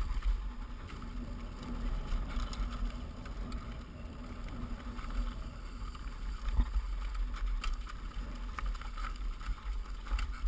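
Mountain bike descending a steep, rocky dirt trail: tyres rolling over loose rock and dirt with frequent sharp knocks and rattles from the bike, under a steady low rumble of wind buffeting the bike-mounted camera's microphone.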